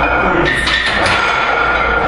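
Steady background hum of a gym, with a few faint held tones and a soft noisy rustle about half a second in.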